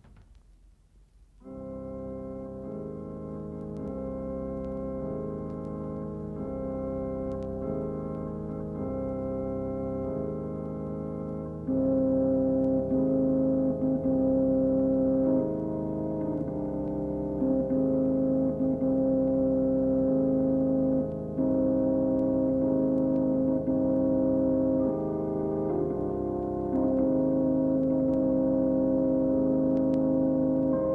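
Music: sustained organ chords, held notes changing every second or two. They come in about a second and a half in and get louder about twelve seconds in.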